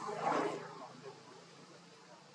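A short, harsh macaque call, loudest in the first half-second and then fading away.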